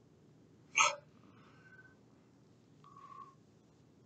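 A man makes one short, sharp throat sound about a second in, followed by faint brief noises near the three-second mark.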